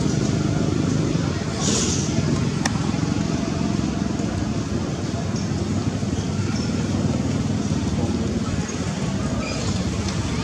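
Steady outdoor background of indistinct people's voices mixed with traffic noise, with a brief high hiss about two seconds in.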